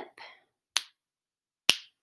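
Two finger snaps about a second apart, keeping a steady beat through two beats of rest between spoken rhythm patterns.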